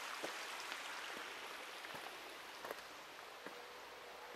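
Steady rush of flowing stream water, with faint scattered ticks and drips.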